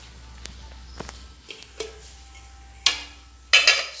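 A steel utensil lid clanking against steel kitchenware. A sharp clank about three seconds in leaves a short metallic ring, and a louder clatter follows just before the end. A few light clicks and steps come before it.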